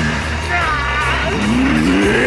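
A man's strained, wordless shout rising and falling in pitch over dramatic orchestral music, with a screeching effect as a sword blade is held back against a bare palm.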